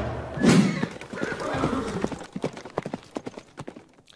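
Galloping horse hoofbeats, a quick irregular run of clops that fades away over about three seconds, with a short horse whinny about half a second in.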